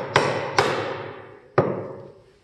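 Hammer blows on a Narex mortise chisel chopping a mortise into a wooden block: two blows in quick succession, then a third about a second later, each sharp strike followed by a short decaying ring.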